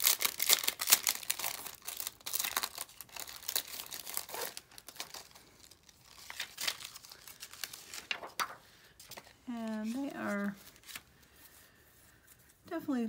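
Clear plastic stamp sheet and its packaging crinkling and crackling as they are handled and peeled apart: thick crackle for about the first five seconds, then only scattered crackles.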